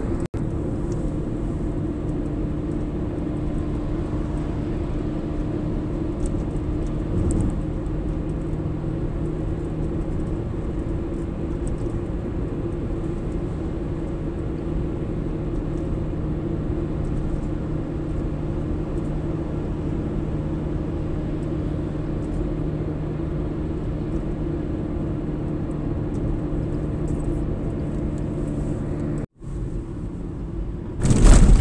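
Steady road and engine noise of a car cruising on an open highway, heard from inside the cabin, with a constant low drone. The sound cuts out for an instant just after the start and again near the end.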